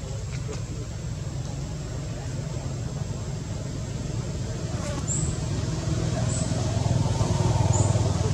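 Low, steady rumble of a motor vehicle, growing louder toward the end, with a few short high chirps in the second half.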